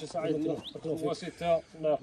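Men's voices talking, the speech breaking into short overlapping phrases.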